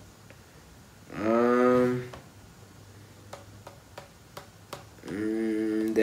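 A man's voice making two drawn-out hesitation sounds while thinking, one about a second in and one near the end, each held on a single pitch for about a second. A few faint clicks fall in the quiet between them.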